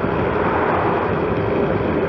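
Steady wind rush over a moving camera's microphone while cycling along a road, mixed with road noise.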